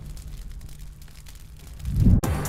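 Fire crackling as a framed photo portrait burns, with faint irregular crackles over a steady low hum. A loud, deep surge swells in near the end.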